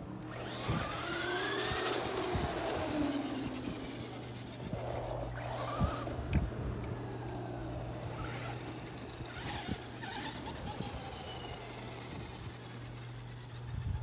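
Two Traxxas 2WD RC trucks, a Stampede and a Rustler, racing: the whine of their electric motors rises as they accelerate, with tyre noise on asphalt. The first run-up starts about half a second in and is loudest over the next two seconds, and more rising whines follow around five and ten seconds.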